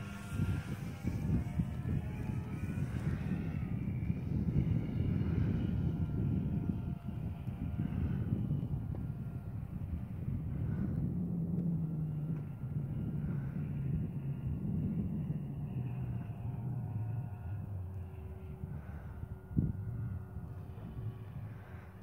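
Electric motor and propeller of a Dynam Albatros radio-controlled biplane in flight: a faint whine that rises and falls in pitch with the throttle, under a louder low rumble. There is a single sharp knock near the end.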